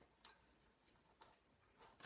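Near silence: room tone with a few faint, short clicks, two of them about a quarter second and a second and a quarter in.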